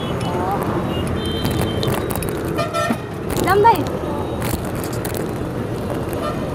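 Busy road traffic running steadily, with short vehicle horn toots about a second and a half in and again near the middle.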